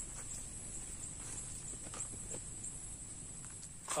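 Faint, irregular soft flaps and taps from a snared white-breasted waterhen beating its wings while it is held in the grass.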